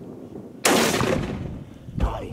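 A single hunting rifle shot about two-thirds of a second in, sudden and loud, with a long echoing tail that dies away over about a second. The shot hits the buck and is called a good shot.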